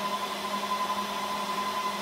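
Dell PowerEdge R730 rack server's cooling fans running steadily: an even rush of air with a constant high whine and a lower hum.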